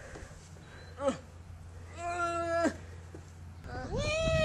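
A person's wordless vocal calls: a short call falling in pitch about a second in, then a held steady note that drops away at its end.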